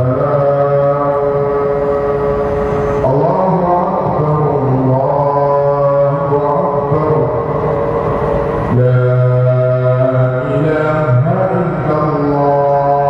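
A man's voice chanting in long, held melodic notes, each sustained for several seconds before moving to a new pitch, in the manner of religious recitation.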